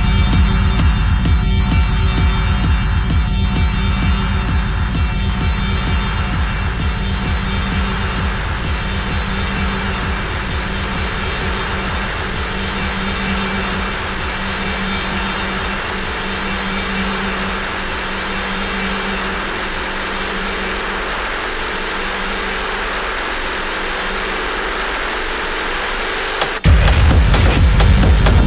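Industrial techno from a continuous DJ mix: a fast pulsing bass under a loud hissing wash of noise. For the first half the hiss drops out briefly about every two seconds. The bass thins out over the last several seconds.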